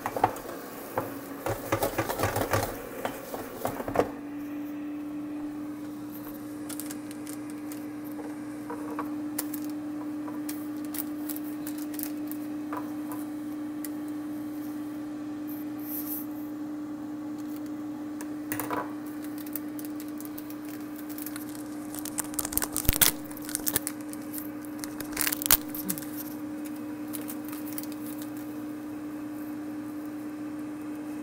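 Steady hum of a running Ninja air fryer's fan, with kitchen handling noise in the first few seconds and several sharp clicks and clatters about three quarters of the way through.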